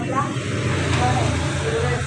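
A steady low rumble with faint voices over it.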